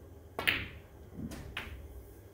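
Snooker shot on the black: a sharp click about half a second in as the cue ball strikes the black, then fainter knocks about a second later as the black drops into the pocket and the white runs on.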